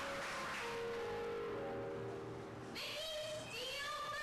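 A person's voice imitating a cat: one long, drawn-out meow, then shorter meows that rise and fall in pitch.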